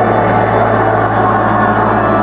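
Church organ playing held chords over a steady low bass note.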